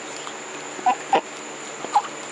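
White domestic duck giving three short calls: two close together about a second in, and one near the end.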